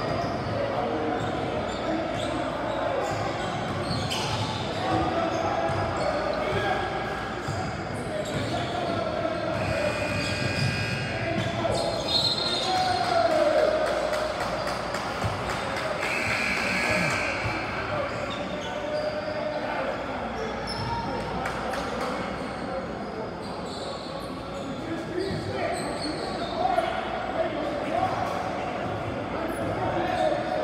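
Basketball bouncing on a hardwood gym floor among the many voices of players and spectators, echoing in a large gym.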